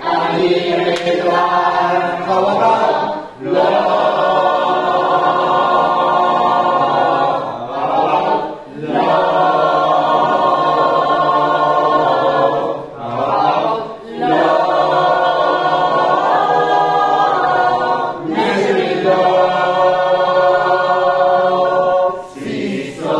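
Mixed choir of men and women singing a cappella in harmony, in long held phrases of four to five seconds separated by short breaths.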